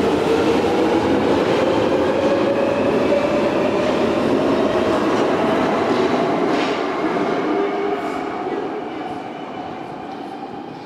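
London Underground 1996 stock deep-tube train departing, its GTO inverter propulsion whining in tones that slowly rise in pitch as it accelerates, over rumbling wheels on the rails. The sound fades from about eight seconds in as the train goes into the tunnel.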